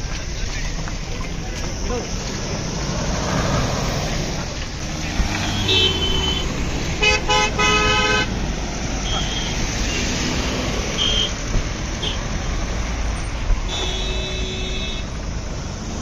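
Car horns honking in a series of short toots, the densest burst of quick blasts about halfway through and a longer blast near the end, over steady engine and road noise from cars driving past.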